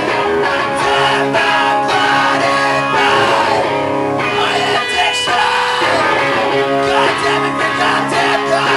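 A live punk/screamo band playing an instrumental passage: distorted electric guitar and bass chords ringing out loud and sustained, with repeated drum and cymbal hits.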